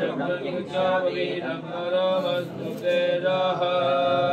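Men's voices chanting Vedic Sanskrit mantras in long, held tones, the recitation that accompanies putting on the sacred thread (yajñopavīta).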